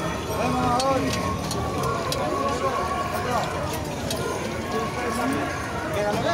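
Voices of a busy street crowd, with scattered light clicks of a metal spatula and tongs against a flat metal griddle as skewered kebab rolls are turned in oil.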